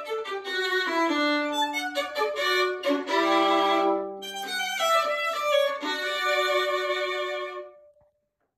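Solo violin played with the bow: a quick run of notes, then longer notes over a held low note. The final notes of the piece stop just before the end.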